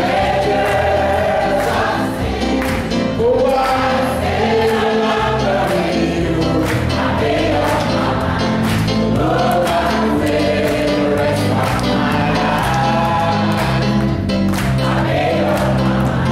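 A congregation singing a gospel song together, over a bass accompaniment and a steady beat of hand claps.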